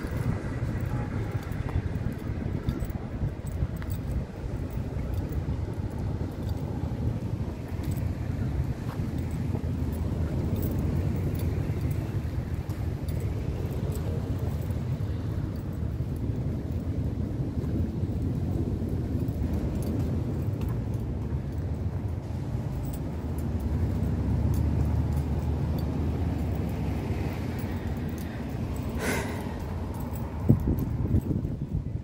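Street traffic: cars passing along a seaside road, heard from the sidewalk as a steady low rumble, with scattered light ticks and one sharp click near the end.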